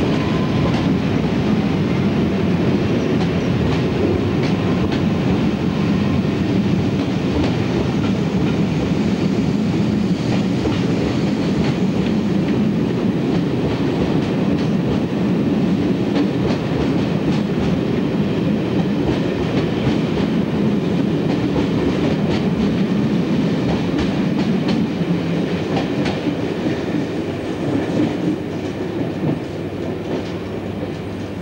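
Diesel locomotive hauling a train of passenger coaches away, its engine running steadily, with wheels clicking over rail joints and pointwork. The sound eases a little over the last few seconds.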